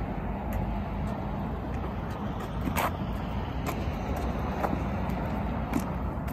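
Steady road traffic noise, with a few light taps, the clearest about three seconds in.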